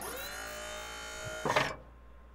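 A synthesized electronic tone that glides up at its start, holds steady for about a second and a half, and ends in a short noisy burst.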